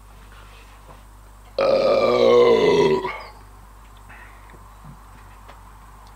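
One long burp of about a second and a half, starting about a second and a half in, its pitch sinking slightly toward the end, after a swig of fizzy beer.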